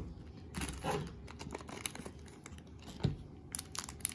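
Soft crinkling and rustling of plastic packaging as a just-cut blind bag is emptied and tiny enamel pins sealed in small plastic bags are handled, with scattered light clicks and taps.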